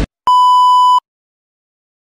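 A single steady electronic beep, a pure-sounding tone of about 1 kHz held for roughly three-quarters of a second and cut off sharply, like a censor bleep or test tone.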